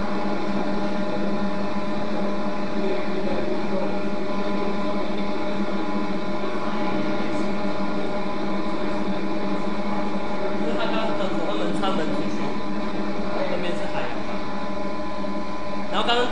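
Steady drone of a ship's machinery heard over a video-call link: a low hum with several steady tones held above it. Faint voices come in about two-thirds of the way through.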